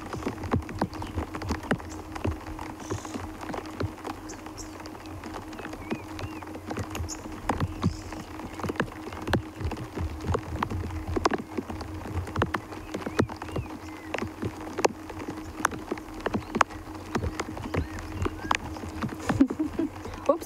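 Raindrops tapping irregularly on a hard surface close to the microphone, many sharp little ticks a second, over a steady low hum.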